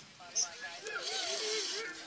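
Wooden bow drill being worked in slow test strokes: the spindle scraping against the hearth board as the bow goes back and forth, a rasping friction noise that builds through the second half.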